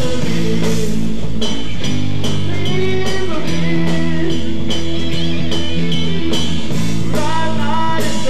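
Live heavy-rock band playing loud: distorted electric guitar and bass holding sustained chords over a steady drum-kit beat.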